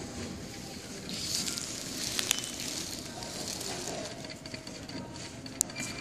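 Crackling rustle of ferrets moving about on pellet litter, with a few sharp clicks.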